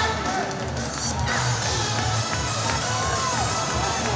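An upbeat idol-pop song with a steady beat plays loudly through the stage speakers. Audience members shout and cheer over it, with one drawn-out shout about three seconds in.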